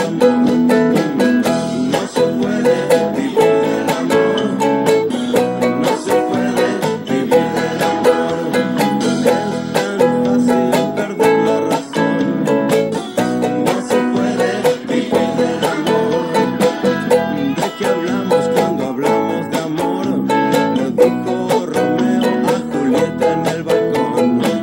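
Ukulele strummed in a steady rhythm, down and up strokes broken by muted percussive chops, moving through E, A and B major chords.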